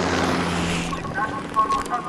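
A steady, low engine drone runs under a shouted voice at the start.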